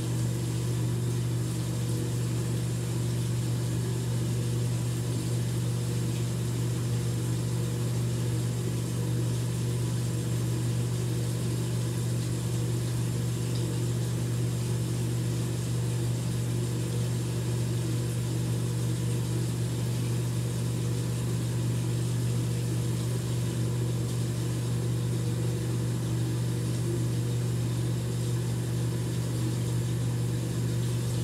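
Bathroom faucet running into the sink, with a steady low hum underneath that does not change.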